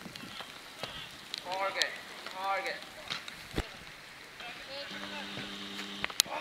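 Sounds of an outdoor football match: distant shouts from players and one sharp thud of a football being kicked about three and a half seconds in, over a steady background hiss. A low steady hum comes in near the end.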